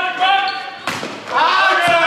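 A volleyball struck hard with one sharp smack a little under a second in, between players' shouts, followed by loud shouting and cheering from players and crowd as the point is won.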